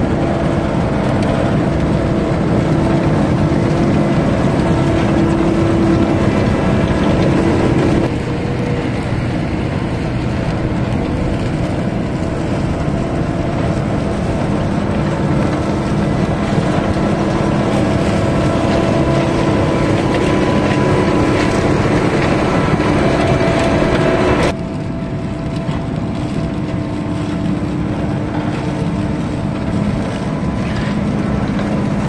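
Vervaet self-propelled sugar beet harvester running steadily as it lifts beet, its engine and lifting gear making a continuous drone, with sudden drops in level about eight seconds in and again near twenty-five seconds.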